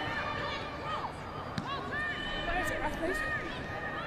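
Raised voices calling out across an open rugby pitch over steady outdoor crowd ambience, with one short thud about one and a half seconds in.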